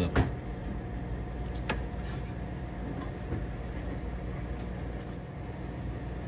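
Steady low machine hum with a few light clicks, the loudest just after the start and another under two seconds in, as the filled plastic cup is lifted off the bottom-fill beer dispenser.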